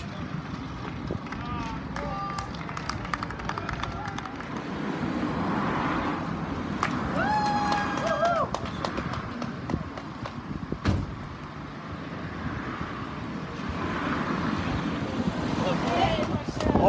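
Road traffic passing in waves, with a short held high call partway through and a sharp knock a few seconds later.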